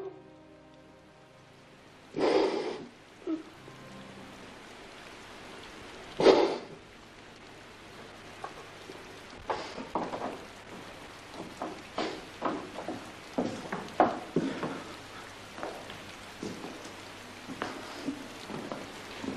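Two short, loud rushes of noise about two and six seconds in, then a run of light, irregular steps and knocks on wooden floorboards.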